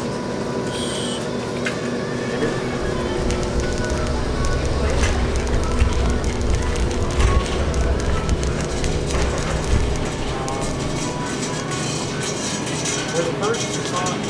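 Background music with indistinct voices over supermarket ambience. From about three to ten seconds in, there is a low rumble of shopping-cart wheels rolling.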